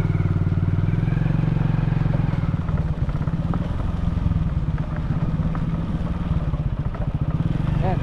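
Motorcycle engine running steadily under way, its pulsing note shifting and settling lower about three seconds in.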